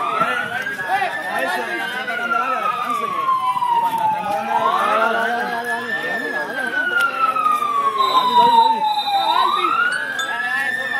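A wailing siren, its pitch rising quickly over about a second and then falling slowly over about three seconds, going through about two full cycles, with crowd voices underneath.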